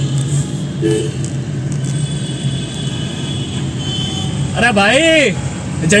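Traffic and a car's engine heard from inside the car, a steady low hum under road noise. About four and a half seconds in, a man calls out loudly with a rising and falling voice.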